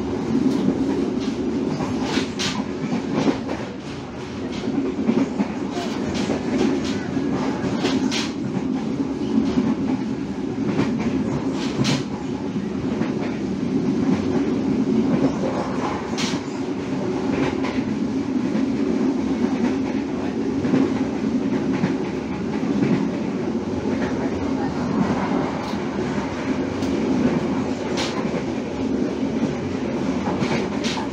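Passenger train running along the line, heard from inside a carriage: a steady rumble of wheels on rails with occasional sharp clacks as the wheels pass over rail joints.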